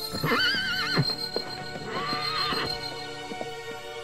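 Cartoon unicorn whinnying: a loud neigh with a wavering, quavering pitch, lasting under a second, over background music.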